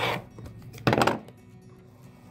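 The rasping stroke of a rotary cutter trimming pinked edges off a stack of fabric strips along an acrylic ruler ends right at the start. About a second in comes a single sharp knock.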